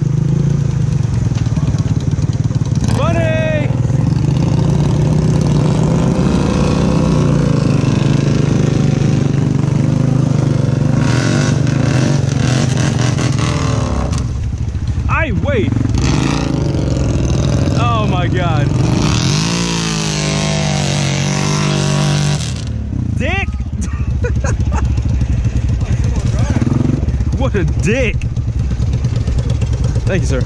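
Honda Rubicon ATV engine running under load while the quad is stuck in deep mud and being pulled out on a tow rope, with its revs rising and falling and a brief drop in level about two-thirds of the way in. Voices shout over it at times.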